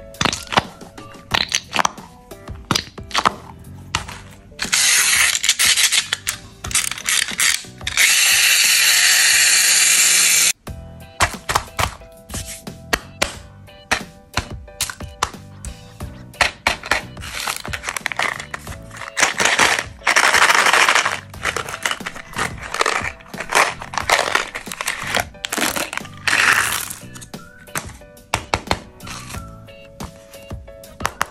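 Hands handling candy packaging: a dense run of plastic clicks and taps, broken by a few louder stretches of hissing rustle, the longest and loudest from about 8 to 10 seconds in. Quiet background music runs underneath.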